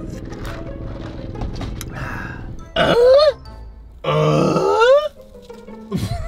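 Background music, then two loud vocal sounds from a man: a short one about three seconds in and a longer one about a second later whose pitch rises at the end.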